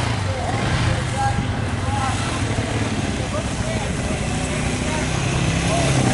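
ATV (quad) engines running at low speed on a gravel road, growing louder near the end as a quad drives up.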